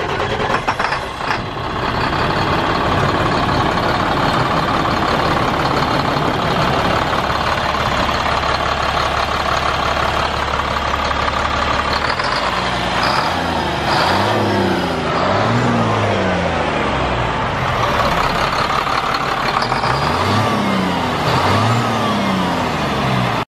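Caterpillar C7 inline-six turbo diesel in a 2005 Sterling L8500 semi truck, running at a steady idle just after starting. From about halfway through it is revved several times, the pitch rising and falling with each blip of the throttle.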